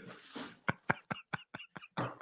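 A man's stifled, breathy laughter: short soft pulses of breath at about five a second, starting about half a second in.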